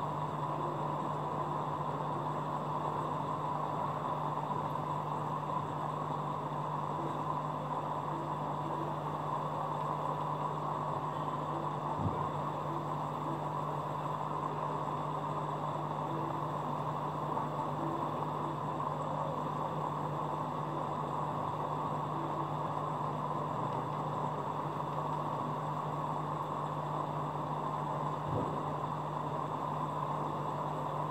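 Aquarium equipment running: a steady low hum under an even hiss, with two faint knocks, one about twelve seconds in and one near the end.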